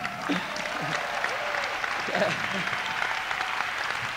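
Audience applauding with steady clapping, a few faint voices heard among it.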